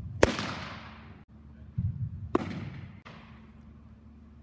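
Two baseball pitches smacking into a catcher's leather mitt about two seconds apart, each a sharp pop that echoes in a large indoor hall. A low thump comes about half a second before each pop.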